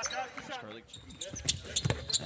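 A basketball bouncing on the court during live play, with a couple of sharp thuds in the second half. A commentator's voice trails off at the start.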